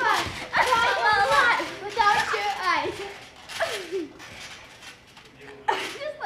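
Girls' excited shouts, squeals and unclear chatter while playing on a trampoline, busiest in the first half and trailing off, with a sharp burst of voice near the end.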